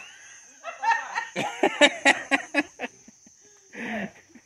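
People chuckling and talking quietly, with crickets keeping up a steady high trill underneath.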